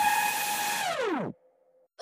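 The close of an electronic dubstep track: a held synth tone over hiss drops steeply in pitch like a slowing tape (a tape-stop effect) about a second in, then cuts to silence for about half a second.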